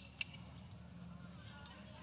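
Faint clinks of metal cutlery being set down on a plate, with one sharper click just after the start.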